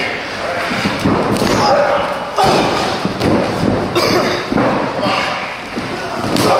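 Pro wrestling ring: a few sharp thuds and slams of bodies and feet on the ring canvas, with voices calling out throughout.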